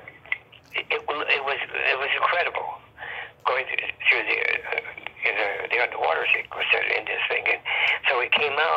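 Only speech: a person talking steadily, with a thin, telephone-like sound.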